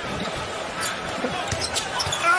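Basketball arena crowd noise, a steady hubbub from the stands, with a short laugh from a commentator near the start.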